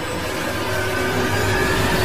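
Outro animation sound effect: a dense rushing noise with a few held tones, slowly growing louder.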